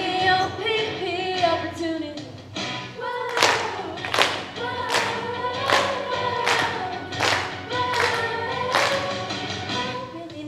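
Group of young girls' voices singing a stage-musical number together. From about three seconds in there are eight sharp claps on the beat, a little more than one a second.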